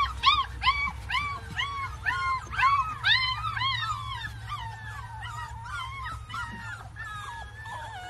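A puppy whining in a rapid series of short, high-pitched cries, about two or three a second, which grow fainter and more wavering in the second half.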